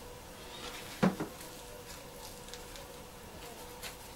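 Potting soil being poured from a plastic scoop into soft plastic seedling cups, faint rustling and trickling, with one sharp knock about a second in.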